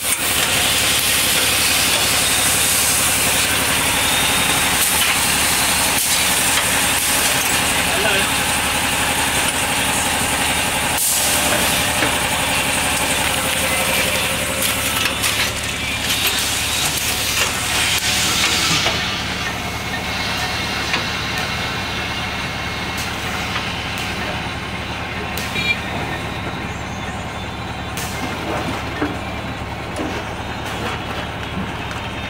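Bag-silage packing machine running: a steady machine hum under a loud hiss that drops away about nineteen seconds in, leaving the hum and a few knocks.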